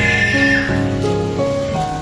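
Background music: a melody of held notes that change every half second or so over an even accompaniment.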